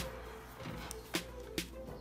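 Faint background music with a held note and a few short clicks.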